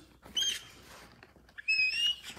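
Two short, high-pitched squeaks about a second apart, the second gliding upward in pitch.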